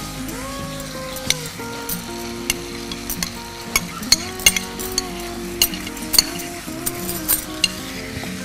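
Marinated chicken pieces sizzling as they go into hot oil in a karai and are stirred, with a wooden spatula knocking and scraping against the pan in irregular sharp knocks.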